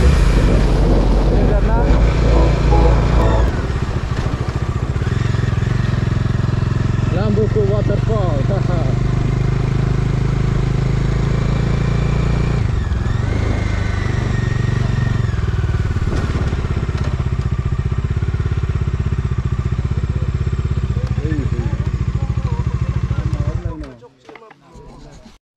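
Motorcycle engine running steadily as the bike is ridden along a road, with a steady low rumble; the sound cuts off abruptly near the end.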